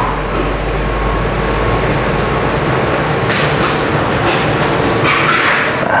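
Steady machine noise, a constant hum and hiss with a low rumble underneath, with brief surges of hiss about three and five seconds in.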